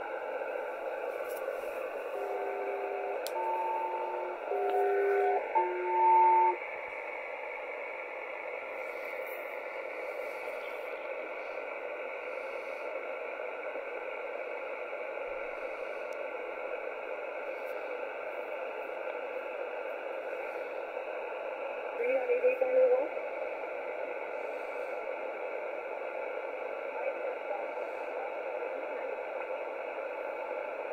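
SELCAL selective-calling tones over an HF upper-sideband air-traffic channel, heard through a shortwave receiver. A couple of seconds in, four steady two-note tone blocks of about a second each sound back to back, two alternating tone pairs sent twice, the code that alerts one aircraft's crew to a call. Steady radio static hiss fills the rest, with a short warbling burst about 22 seconds in.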